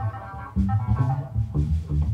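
A live band plays instrumental music: a bass line, keyboards and a drum kit.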